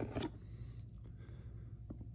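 Faint handling of a small stack of trading cards, a few soft slides and light ticks as a card is moved from the back of the stack to the front, over a steady low hum.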